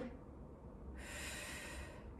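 A woman breathing out hard, about a second long, about halfway through, with the effort of standing up from a single-leg deadlift with a kettlebell.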